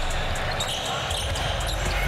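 Court sounds of a televised basketball game: the ball and players' sneakers on the hardwood during a play, with short knocks over a steady arena hiss.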